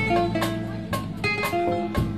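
Live bossa nova jazz band playing an instrumental passage, with plucked guitar to the fore over bass, drums and percussion. Sustained ringing notes sound against regular light percussion strokes.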